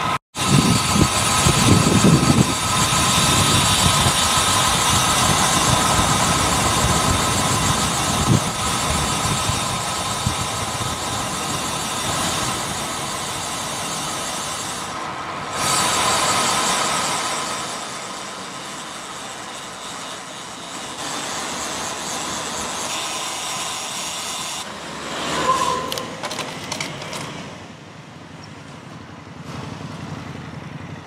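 Wind rushing over the camera's microphone, with road-bike tyre noise on asphalt, as the bike rides at speed. The noise is loudest in the first half and drops lower and patchier later.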